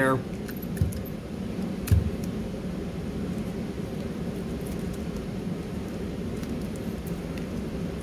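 Two dull knocks on a tabletop, about one and two seconds in, as a strip of tape is taken from a weighted desktop tape dispenser. Then faint handling of the tape as it is pressed around a penny on a drinking straw, over a steady ventilation hum.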